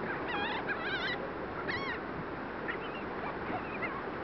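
A flock of gulls calling while being fed: several short, wavering calls in the first two seconds, then fainter calls near the end, over a steady background hiss.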